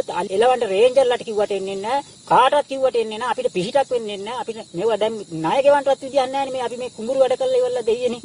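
A man speaking continuously to camera, over a steady faint hiss in the recording.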